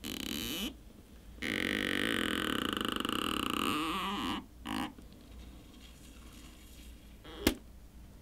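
Stretch-release battery adhesive pull tab being pulled out from under a smartphone battery, creaking and buzzing as it stretches: a brief creak, then one long buzzing stretch of about three seconds, then a shorter one. A single sharp click comes near the end.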